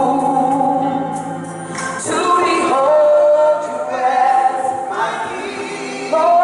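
Women's gospel praise team singing with music behind them, holding long notes that slide in pitch; the singing dips briefly, then a new, stronger phrase begins about two seconds in.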